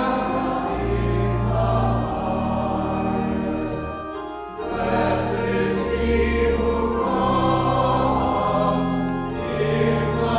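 Choir singing with organ accompaniment: voices over long held low organ notes, with a brief lull between phrases about four seconds in.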